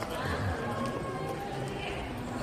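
Indistinct voices talking in the background over room noise, with no clear words.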